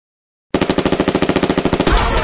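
Machine-gun fire sound effect opening a hip hop track: a rapid, even run of shots at about fifteen a second, starting half a second in and giving way to the beat near the end.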